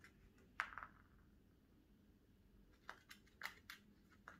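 A Chihuahua puppy's claws clicking on a hard laminate floor as it scrambles about: a sharp click about half a second in, then a quick run of four or five clicks near the end, with near silence between.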